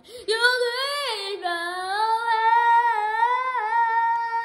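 A child's voice singing unaccompanied, holding one long note on the word "you" that starts about a quarter second in, dips in pitch about a second in, and wavers slightly as it is held.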